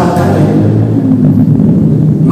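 A man's voice chanting in a low, drawn-out melodic line, without breaks between words.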